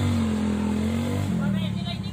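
Motorcycle engine running at a steady note, slowly fading.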